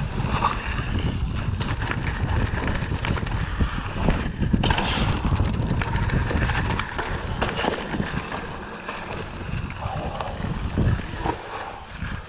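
Wind buffeting the action-camera microphone as a Kona Satori mountain bike descends dirt singletrack, its tyres rolling on the dirt and its chain and frame rattling over bumps. It gets quieter in the second half.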